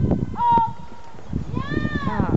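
A horse's hooves thud on grass as it lands a cross-country log jump and canters on. Over them come high-pitched excited calls from onlookers: one long call about half a second in, and more near the end.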